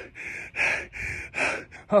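A man panting hard, quick heavy breaths about two or three a second, with a grunt near the end: out of breath from running hard up a hill.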